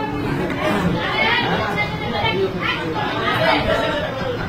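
Overlapping chatter of several people talking at once around a table.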